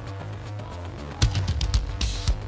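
Metal band playing with a drum kit, over a held low bass: a quieter stretch, then drum strikes come in about a second in.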